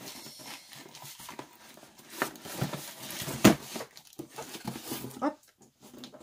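A parcel being opened by hand: packaging rustling and crinkling as it is torn and pulled apart, with one sharp louder noise about three and a half seconds in.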